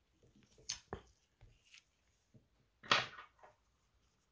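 Light clicks and knocks from handling a wristwatch as it is taken out of a timegrapher's clamp and turned over, with one louder, longer knock about three seconds in.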